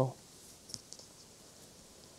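The tail of a spoken word, then a pause of near silence with two faint clicks, the first about three-quarters of a second in and a weaker one about a second in.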